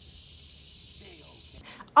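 Steady, high-pitched buzzing of an insect chorus with a faint low rumble under it, cut off abruptly near the end.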